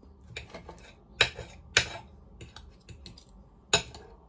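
A metal fork clinking and scraping on a plate as food is cut and picked up, with a few light ticks and three sharper clinks.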